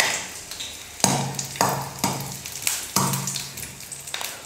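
Green chillies and garlic cloves sizzling in hot oil in an aluminium kadai. The sizzle swells suddenly three times, about a second in, a little later, and again near three seconds, fading after each.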